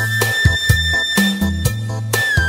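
Background music: a passage without singing, with drum beats, bass notes and one long held high note.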